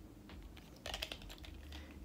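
Faint clicking and tapping of long fingernails handling a small cardboard product box, with a quick cluster of clicks about a second in.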